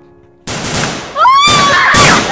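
A sudden loud burst of noise about half a second in, followed by a person screaming in high, wavering cries, with two sharp bangs, the second near the end.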